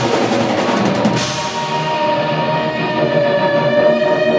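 Live rock band with electric guitars playing a rapid drum fill in the first second or so. The drums then drop away and a held guitar chord rings on.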